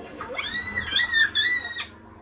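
A young child's long, high-pitched squeal, held for about a second and a half with a wavering middle, then stopping abruptly.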